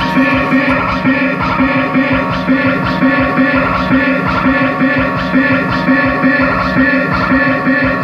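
Music with a steady beat played loud through a Sony Xplod oval car speaker.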